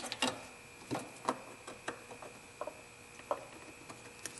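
Light, scattered plastic clicks of electrical connector plugs being pushed and snapped back into place by hand under the hood, about six in all. A faint steady high tone runs underneath.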